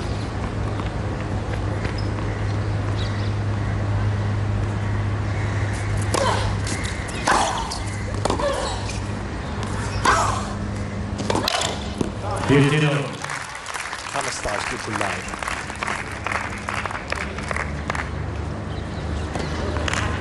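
Tennis ball being bounced and struck by rackets on a hard court, a series of sharp knocks through the second half, over a steady murmur of crowd voices.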